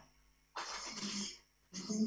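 A faint, short vocal sound from a person about half a second in, lasting under a second, with another faint vocal sound starting near the end.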